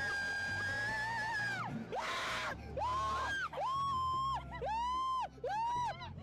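A man screaming on a roller coaster ride: one long held scream, a short rough burst, then a string of four shorter screams that rise and fall in pitch. Background music with a bass line runs underneath.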